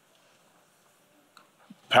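Near silence in a pause between spoken sentences, broken by a faint click about one and a half seconds in, before a man's voice starts again right at the end.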